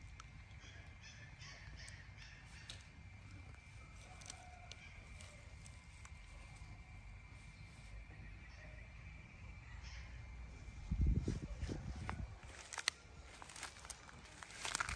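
Outdoor ambience with a steady low rumble of wind on the microphone and a quick series of short, high animal calls in the first couple of seconds. Near the end come louder thumps and sharp snaps and rustles from the bush branches the baby macaque is pulling at.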